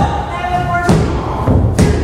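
Three heavy thumps on the wrestling ring, about a second apart, during a pin, with people in the crowd shouting between them.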